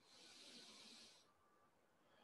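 One faint, slow breath of air lasting about a second, then near silence: a controlled deep breath taken on count.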